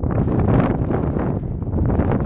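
Wind blowing across the microphone, a loud, gusty rushing noise heaviest in the low end.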